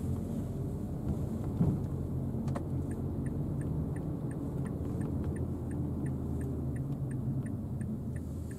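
Cabin noise of a Mazda Biante minivan with the 2.0-litre SkyActiv petrol engine and a conventional six-speed torque-converter automatic, driving steadily: a low, even engine and road rumble, with a light regular ticking about three times a second.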